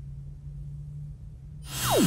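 Faint steady low hum, then near the end a swoosh that swells quickly with a steeply falling pitch sweep: a video transition sound effect.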